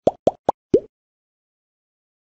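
A quick run of cartoon 'plop' sound effects, each a short pop sliding upward in pitch, four in the first second, as animated balloons burst.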